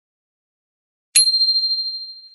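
A single high, bell-like chime struck a little over a second in, ringing out and fading over about a second and a half.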